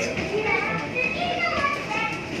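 Several people talking at once, with some high-pitched voices among them, in a loose babble of chatter.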